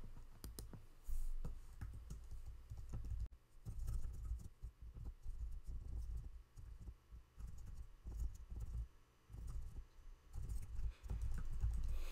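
Typing on a computer keyboard: irregular runs of key clicks with dull low thuds, in short bursts and brief pauses.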